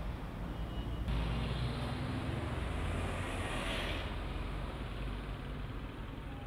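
Road traffic: vehicle engines running in a steady rumble, with a louder rush as a vehicle passes close about halfway through.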